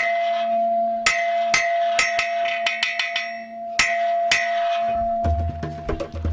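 A hanging round metal plate, scrap metal used as a school bell, struck over and over in an uneven rhythm: each blow clangs sharply over a steady ringing tone that carries on between strikes. A low drone comes in near the end.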